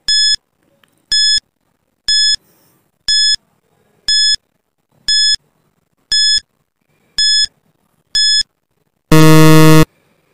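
Countdown timer sound effect: a short electronic beep once a second, nine in all, then near the end a long, loud, low buzz marking that time is up.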